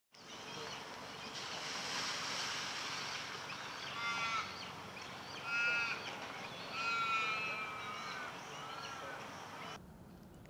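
Outdoor river ambience: a steady hiss with four short, clear bird calls, each bending up and down in pitch, spread from about four to nine seconds in.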